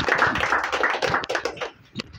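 Applause: many hands clapping together, dying away near the end.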